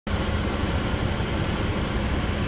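A steady low mechanical rumble with a constant low hum, unchanging throughout.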